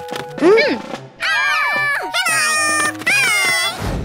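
High-pitched cartoon children's voices giving short wordless frightened cries over background music.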